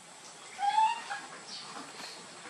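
Baby macaque giving one short, high-pitched call about half a second in, followed by a few fainter high squeaks.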